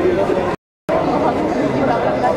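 Crowd chatter: many people talking at once in a waiting crowd, no single voice standing out. The sound cuts out completely for a moment about half a second in, then the chatter resumes.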